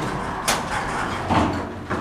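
1970s Dover elevator's sliding doors closing, with a sharp clunk about half a second in and a second knock a little later, over a steady low hum.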